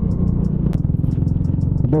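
Hero Splendor Plus's small single-cylinder four-stroke engine running steadily at cruising speed, a rapid even pulsing hum.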